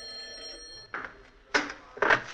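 Telephone bell ringing with a steady ring, which stops just under a second in. A short click follows about a second and a half in, just before the call is answered.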